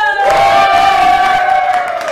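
A woman's long, high shout, held on one note, with a group cheering underneath.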